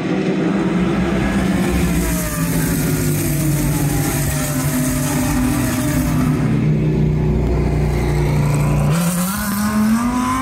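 GT Masters GT3 race cars running at speed down the main straight, their engines at high revs. The engine note sinks slowly as the cars pull away, then a fresh, higher note rises sharply about nine seconds in as the next car comes through.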